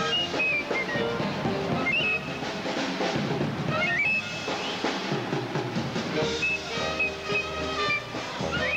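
Instrumental music with drums keeping a beat under a high melody line.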